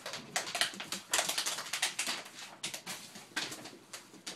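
Wrapping paper crinkling and rustling in quick, irregular bursts as dogs handle a wrapped present.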